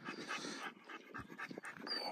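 American pocket bully puppy panting quickly and softly in a steady run of short breaths; the dog is winded from exercise.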